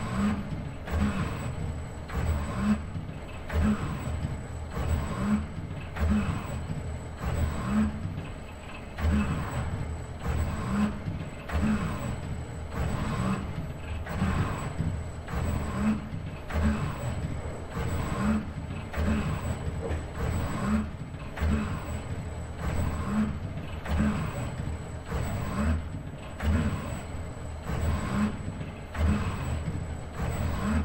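ABB IRB120 robot arm's servo motors whirring as the arm moves, in a cycle that repeats about every second and a quarter, with a steady high-pitched whine underneath.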